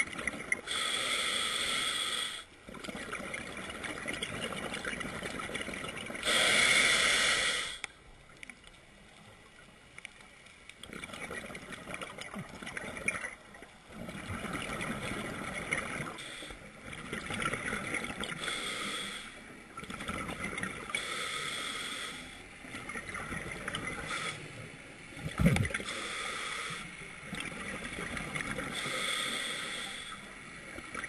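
A scuba diver breathing through a regulator underwater: hissing breaths and bubbling that come in one- to two-second bursts every few seconds. There is one sharp knock late on.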